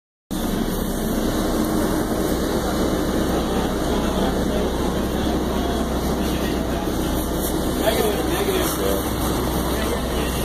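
A Metro-North commuter train standing at the platform, its steady running hum filling the air, with people's voices in the background from about eight seconds in.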